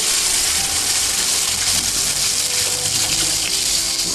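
Water pouring from a plastic bottle into a large stainless steel pot of softened onions, a steady splashing.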